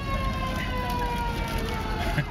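Emergency vehicle siren winding down, its pitch falling slowly and steadily, over a low rumble.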